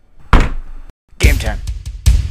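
A single heavy thunk about a third of a second in, dying away quickly; the sound then cuts out briefly before a man's voice says "Okay".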